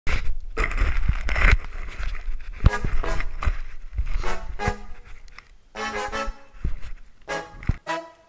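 Rubbing and knocking from a camera being handled and set up close to the microphone, followed by several short bursts of a pitched sound.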